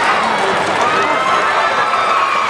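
Spectators at a wrestling match cheering and shouting, many voices overlapping with a few calls held longer than the rest.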